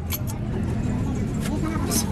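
Steady low rumble of a roadside truck workshop, with a few light metallic clicks from steel axle parts being handled, and faint voices in the background.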